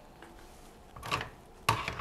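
Kitchen utensils clinking in a dish rack as one is picked out: a light clatter about a second in and a sharper one near the end.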